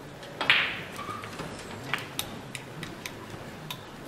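Snooker balls clicking as a shot is played: the cue strikes the cue ball about half a second in, with the loudest burst of clicks as it hits the other balls, then single sharp clicks every half second or so as balls knock together and off the cushions.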